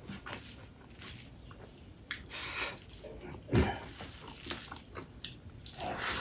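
Close-miked eating sounds of a person eating rice and dal by hand: wet chewing and mouth clicks and smacks, with a louder low thump about three and a half seconds in.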